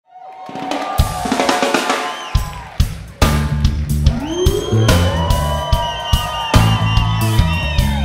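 A live rock band playing an instrumental intro: drum kit with kick, snare and cymbal hits under pitched instrument lines, including a rising glide a few seconds in. The music fades in at the start, and the low end drops out briefly before the full band comes in about three seconds in.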